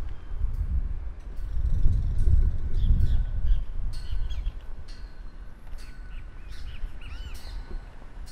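Birds chirping and calling in short notes through the second half, with a pair of looping whistled calls near the end. A low rumble runs under the first few seconds and then fades.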